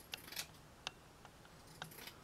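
Scissors snipping a few times at the frayed edge of a piece of burlap to even it out: four faint, short, crisp clicks spread across the moment.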